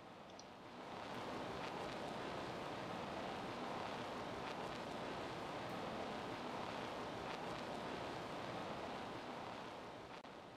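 Steady hiss of background noise that steps up in level about a second in and then holds, with a few faint clicks.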